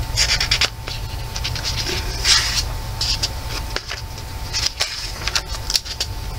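Paper pages of a thick coloring book rustling and scraping under the hands as they are handled and turned, in several short bursts.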